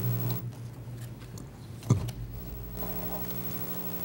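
Steady electrical hum from the sound system, with a single sharp knock about two seconds in.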